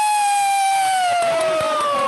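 A person's long, high-pitched celebratory whoop: one held cry that slowly falls in pitch and drops away at the end.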